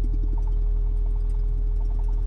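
Doosan DX wheeled excavator's diesel engine idling, heard from inside the cab: a steady low drone with an even, unchanging higher whine over it.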